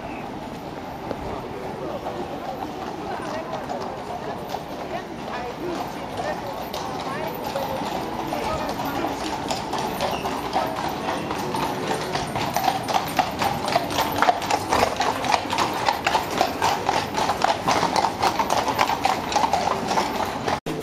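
Horse hooves clip-clopping on cobblestones from a horse-drawn carriage, growing louder in the second half as it comes closer, over the chatter of people nearby.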